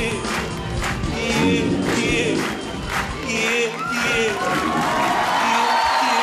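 Live Arabic pop band with a steady drum beat and voices singing, the beat dropping out about two-thirds of the way through onto a held final note while a large studio audience cheers.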